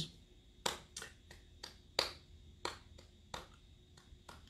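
An even series of sharp taps, about three a second, some louder than others, like a beat being set by hand.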